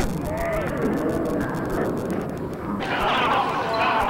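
Indistinct voices of people talking, with a sharp click at the very start where the VHS recording cuts. The sound is dull and muffled for the first three seconds or so, then clears.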